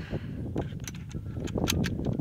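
Wind rumbling on the microphone, with a few light clicks about halfway through and again near the end.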